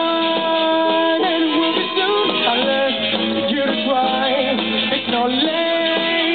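A rock band playing live, with electric guitars, keyboard and drums, and a melody line of held notes that slide between pitches over the band. Recorded from the audience, it sounds dull, without treble.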